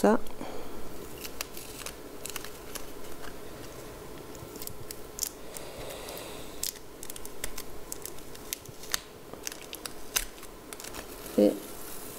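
Masking tape being peeled off the edges of watercolour paper: an irregular crackling rip with scattered small clicks as the tape lifts away.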